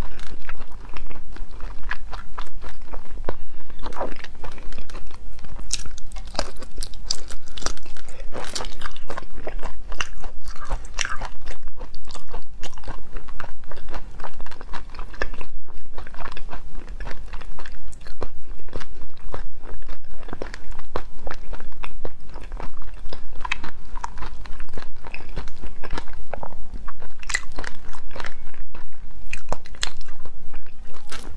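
Close-miked chewing of large cooked shrimp with the shell on: dense, irregular crunches and clicks as the tough shell is bitten and ground between the teeth.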